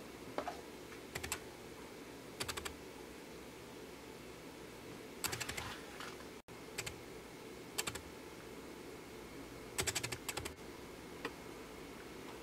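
Light plastic clicks and clacks in short quick clusters of three to five, every second or two, as the plastic parts and remote controller of a Syma X8W quadcopter are handled.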